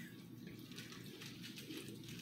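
Quiet room tone: a faint, steady hiss with no distinct event.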